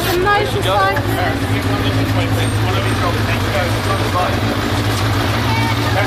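A crowd of photographers talking and shouting over one another, with a steady low hum underneath.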